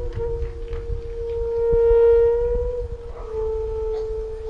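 Background music: a flute holding long, slow notes, one note swelling louder about two seconds in before settling a little lower, over a low rumble.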